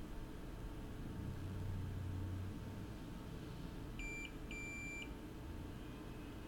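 Two electronic beeps from a digital multimeter in diode mode, a short one and then a longer one about half a second later, as a probe is touched to a pad. A faint low hum sits under the first part.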